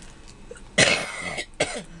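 A woman coughing into her hand: one longer cough about a second in, then a short second one.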